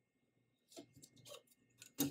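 Near silence, then a few faint scratches and light ticks from a pencil marking paper against a clear plastic ruler and the ruler being lifted away.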